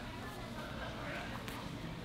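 Quiet room tone with faint rustling of gi fabric and bare feet moving on grappling mats, and a faint tap about a second and a half in.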